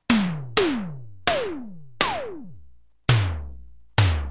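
Synthesized analog-style tom-tom from Reason's Kong Drum Designer struck six times, each hit a sharp click followed by a tone that glides down in pitch and decays. The pitch drop widens over the first four hits, the fourth starting highest and falling furthest, then the last two sound low with almost no glide as the bend amount is turned down.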